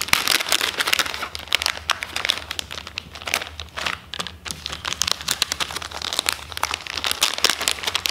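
Plastic packages of Z-Man Turbo FattyZ swimming worms crinkling as they are handled and sorted by hand, a dense, irregular run of small crackles with a brief lull midway.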